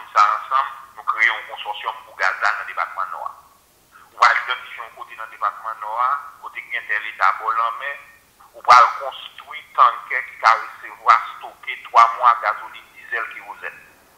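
A person talking continuously in short phrases, played back through a mobile phone's speaker held up to a microphone, so the voice sounds thin and tinny.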